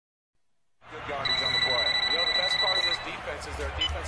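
A telephone ringing: one long warbling electronic ring of about a second and a half, starting about a second in, over voices in the background.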